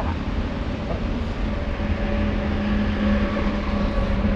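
Street traffic noise: a steady low rumble of vehicles, with a steady engine-like hum coming in about one and a half seconds in.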